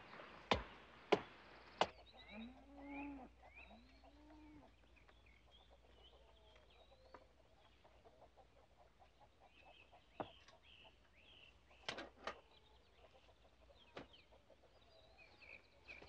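Two axes chopping into a tree trunk, sharp blows about two-thirds of a second apart for the first two seconds. Then a cow moos twice, with birds chirping faintly throughout and a few faint knocks later on.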